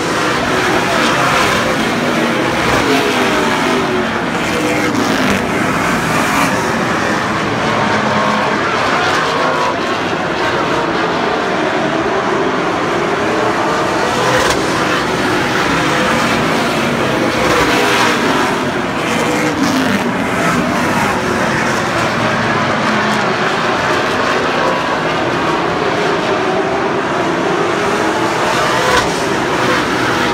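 A pack of late model stock cars racing, their V8 engines running loud throughout. Engine pitch rises and falls again and again as the cars pass close by and brake and accelerate through the turns.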